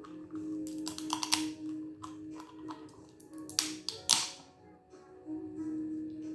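Crab claw shell cracking and crunching as it is bitten and the meat pulled out: a cluster of sharp cracks about a second in and two more a little past the middle, over background music with a steady held note.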